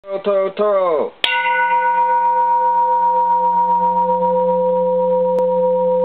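Bronze Japanese Buddhist temple bell struck once about a second in, then ringing on steadily with a low hum and several clear higher tones that barely fade.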